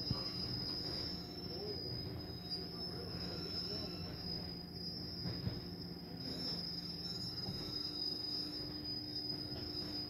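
A vintage Hanna car wash tunnel's machinery and water spray heard from inside the car: a steady rumble under a constant high-pitched whine.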